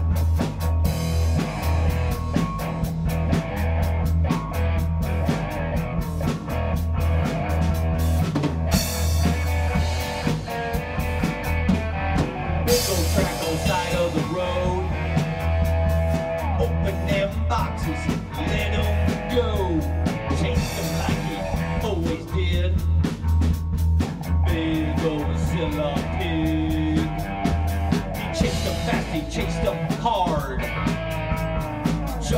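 Swamp-rock band playing an instrumental passage: drum kit and bass keep a steady beat under guitar lines with sliding notes.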